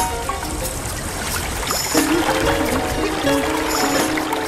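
Running water trickling under background music. The music's held notes become fuller from about halfway through.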